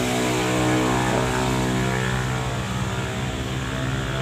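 An engine running steadily at idle: a low, even hum with a steady pitch.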